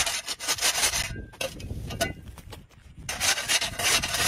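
Long-handled steel scraper blade scraped across a concrete driveway, lifting matted grass and weeds, in a run of short rasping strokes with a quieter stretch around the middle.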